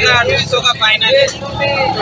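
Speech only: voices talking in Urdu, bargaining over prices, with a steady low background rumble.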